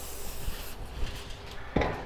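Aerosol cooking spray hissing onto a sheet of aluminum foil, stopping under a second in, then faint crinkling of the foil as it is handled.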